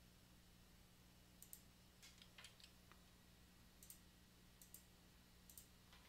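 Near silence with a few faint computer mouse clicks scattered through it, some in quick pairs, over a low steady electrical hum.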